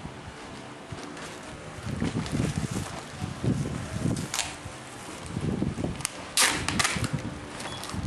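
Newspaper and a plastic bag rustling and crinkling as a small figurine is wrapped by hand, with a couple of sharper crackles about four and six seconds in.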